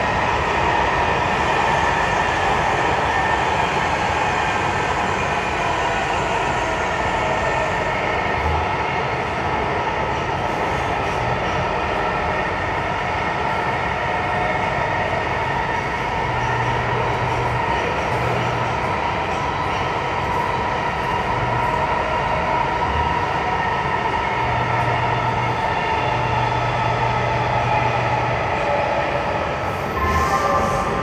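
A Los Angeles Metro rail train running at speed, heard from inside the car: a steady loud rolling rumble with high whining tones that drift slowly in pitch.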